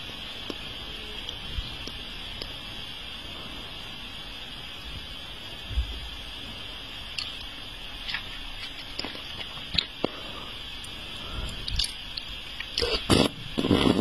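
Wet mouth noises from lips and tongue: scattered faint clicks and smacks over a steady background hiss, growing louder and more frequent in the last second or two.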